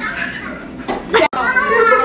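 Children's voices talking and playing. Just over a second in comes a short, loud, sharp sound, which cuts off in a momentary gap in the audio.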